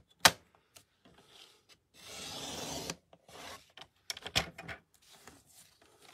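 Paper trimmer's sliding blade cutting a strip of patterned paper on the diagonal, a steady rasp lasting about a second midway. A sharp click comes just after the start and a few more clicks follow the cut.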